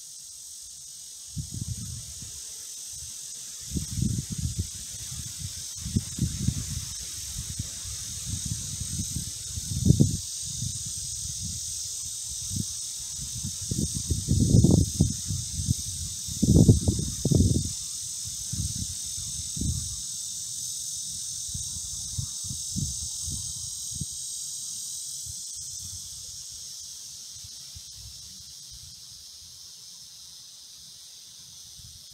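Steady, high-pitched drone of insects in a summer field. Over it come irregular low rumbling gusts of wind on the microphone, starting about a second and a half in and dying away after about twenty seconds; the strongest are around ten seconds and between fifteen and seventeen seconds.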